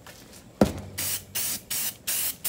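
Aerosol can of black spray paint hissing in short, evenly spaced bursts, three in the last second. A single sharp knock comes about half a second in, before the spraying starts.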